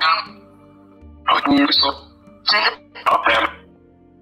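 A short voice phrase in several brief bursts over soft, steady background music: a metaphony (EVP) recording whose words the uploader captions as "Dora in Paradiso c'è con me".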